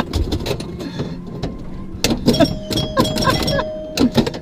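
Pinball machine being played in a moving van: rapid clacks and knocks of flippers and bumpers over the van's low road rumble, with a held electronic tone through the second half.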